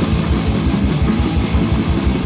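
Heavy metal band on a 1989 eight-track demo recording: distorted electric guitar, bass guitar and drums playing a fast riff, with a rapid, even pulse in the low end.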